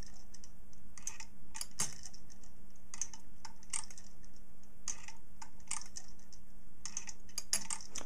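Light clicks at irregular intervals from a homemade Hipp toggle pendulum movement, the toggle ticking over the dog as the pendulum swings, with a few clicks close together near the end as the toggle catches on the end of the dog. A steady low hum runs underneath.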